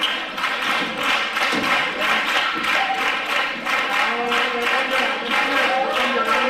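Carnival chirigota on stage: a steady rhythmic tapping or clapping, about three beats a second, under voices, with pitched singing joining in about four seconds in.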